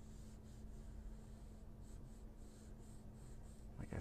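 Pencil sketching on a pad of drawing paper: faint, short scratching strokes, one after another.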